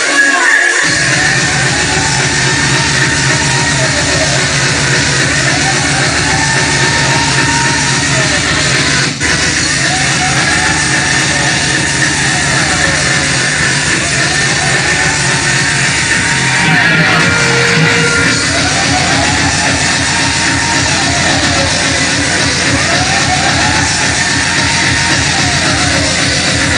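Loud, distorted hardcore/industrial electronic dance music over a club sound system, with fast kick drums and a synth sweep that rises and falls, repeating every few seconds. It breaks off for an instant about nine seconds in.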